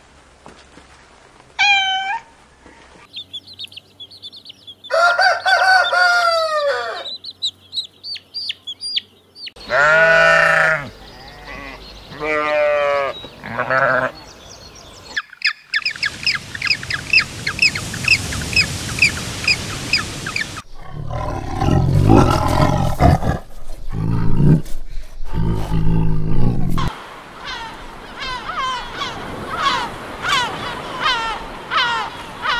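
A string of different animal calls, one kind after another with abrupt switches: a short falling call near the start, loud sweeping calls, a rapid run of chirps, then deep, loud calls in the second half.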